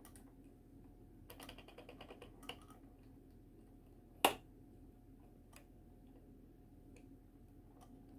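Small plastic clicks as the jointed excavator arm of a 1/35 scale plastic model is moved by hand. A run of quick light clicks comes between about one and two and a half seconds in, then one sharp click about four seconds in, the loudest. A faint steady hum runs underneath.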